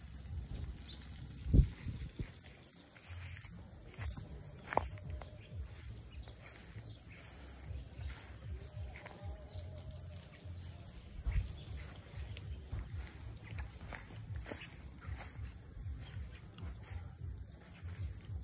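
Insects chirping steadily outdoors, a high pulsing call repeating several times a second, over the low rumble of a handheld phone being carried on a walk, with a sharp thump about one and a half seconds in and a couple of lighter knocks later.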